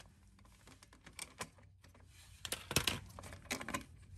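Irregular light clicks and small knocks as the plastic air filter housing on a Honda-clone small engine is unbolted and worked loose by hand. The clicks are sparse at first and come more often in the second half.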